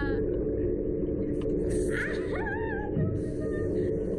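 A girl rider's high, wavering squeal rising up about two seconds in, followed by fainter held vocal tones, over a steady low drone on a SlingShot catapult ride.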